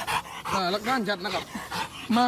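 A Rottweiler attacking a man on the ground: breathy dog sounds, with a pitched voice calling out from about half a second in.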